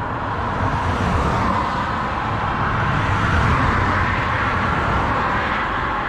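Road traffic: cars on a multi-lane road approaching and passing. Their tyre and engine noise makes a steady rush that swells a little around the middle.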